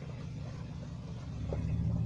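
A steady low rumble that swells louder from about halfway through.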